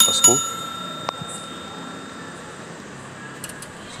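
A piece of metal is struck once and rings like a small bell, fading away over about two and a half seconds, with a single click about a second in.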